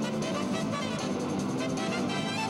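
Jazz big band playing live: the saxophone section and horns playing over a steady beat.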